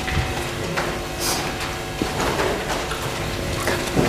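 Lecture-room background through a clip-on microphone: a steady hum with a few light rustles and knocks from footsteps and paper handling.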